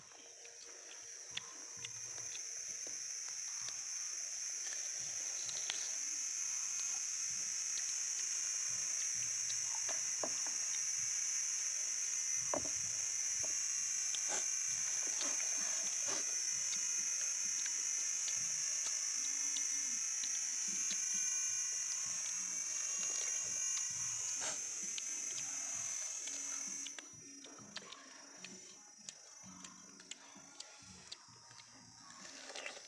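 Cicadas give a steady, high-pitched drone that swells up over the first few seconds and stops abruptly near the end. Scattered small clicks and crunches of people biting and chewing star fruit sound beneath it.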